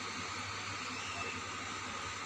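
Onion-tomato masala frying in a steel pot, a steady low hiss with a faint hum underneath.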